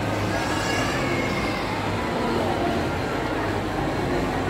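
Busy shopping-mall ambience: a steady low hum with the indistinct chatter of shoppers echoing in a large hall.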